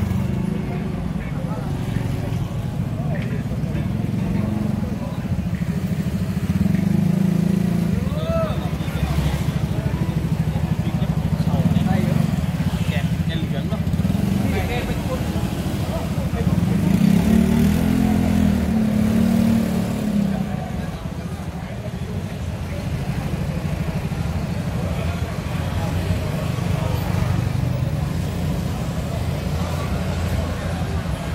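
Busy street ambience: small motorbike engines running and passing, with the voices of people nearby mixed in.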